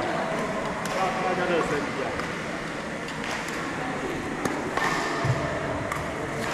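Indistinct voices echoing in a large sports hall, with several sharp racket strikes on a shuttlecock during a badminton rally.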